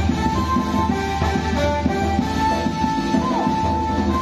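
Traditional music playing loudly and without pause: a single wind-instrument melody of held notes, with one sliding bend a little past three seconds, over dense, steady drumming.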